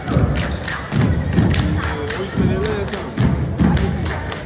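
Cheerleading squad stomping and clapping in rhythm on a gym floor, heavy stomps about every half second with sharp claps, while voices chant a cheer over them.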